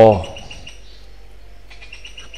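Faint bird chirps, short high calls repeated every so often, after a spoken word ends at the very start.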